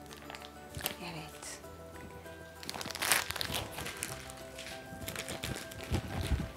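Clear plastic piping bag crinkling in bursts as it is twisted and squeezed, loudest about three seconds in, over background music.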